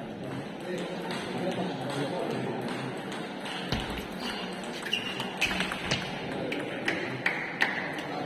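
Table tennis rally: the ball clicking sharply off the paddles and the table, a run of about eight hits roughly half a second apart starting about halfway through, the loudest near the end. Behind it, the steady chatter of people in a large hall.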